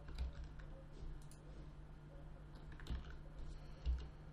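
Faint, scattered clicks of a computer mouse and keyboard at the desk, over a low steady hum.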